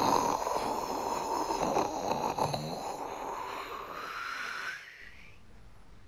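Rocket-launch whoosh for a cartoon rocket blasting off: a rushing, hissing noise that starts suddenly, rises slightly in pitch near the end and stops about five seconds in.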